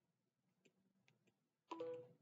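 Near silence with a few faint clicks, then near the end a short sharp knock followed by a brief ringing tone.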